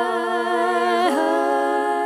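Three voices singing a cappella in close harmony, holding a sustained chord with vibrato and moving to a new chord about a second in.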